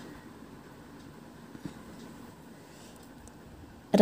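Quiet room tone with a faint low hum and one soft click about one and a half seconds in.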